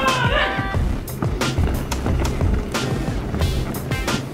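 March music with a steady beat of about two strikes a second, played for a marching parade.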